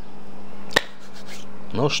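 A single sharp click a little under a second in, over a steady low hum, followed by a short spoken word near the end.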